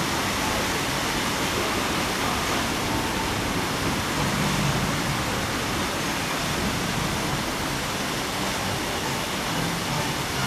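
Water-fountain jets spraying and splashing: a steady, even hiss with no breaks.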